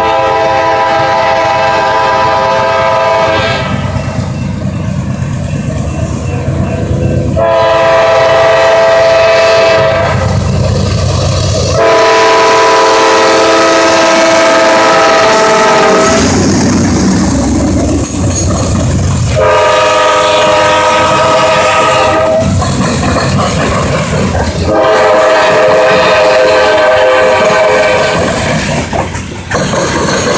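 Freight cars rolling past with steady wheel rumble and clatter on the rails, while a locomotive horn sounds five long blasts, each about three to four seconds long.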